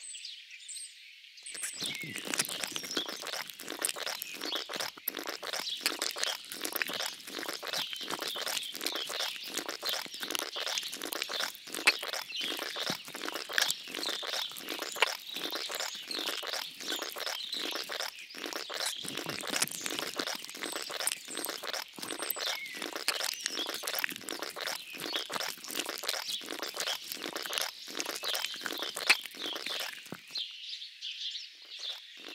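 Background bird song: many birds chirping and calling. About a second and a half in, a steady rhythm of soft clicks joins them, about two a second.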